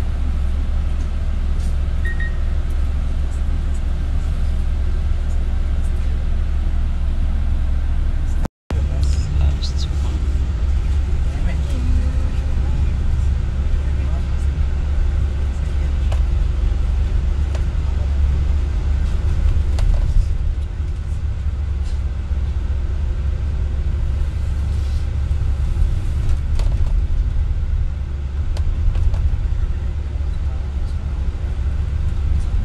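Steady low rumble of a vehicle driving through traffic, with a brief dropout in the sound about eight and a half seconds in.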